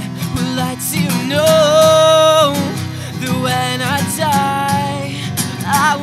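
Acoustic guitar strummed while a male voice sings, holding one long note about a second and a half in.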